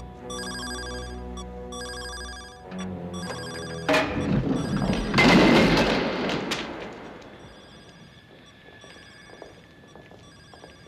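Orchestral film score with a bright, repeating ringing figure over held notes. About four seconds in, a sudden loud rushing noise breaks in, swells for a couple of seconds and fades away.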